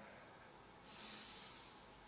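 A man's faint, audible breath through the nose, lasting about a second in the middle.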